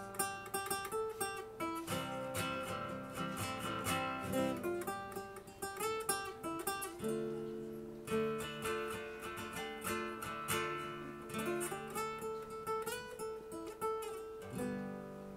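Solo acoustic guitar playing an instrumental break between sung verses: quick plucked and strummed notes for about the first half, then slower ringing chords over bass notes.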